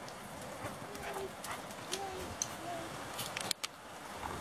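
Light tapping of a dog's paws on concrete as it trots, with a few faint, short voice sounds and a cluster of sharp clicks near the end.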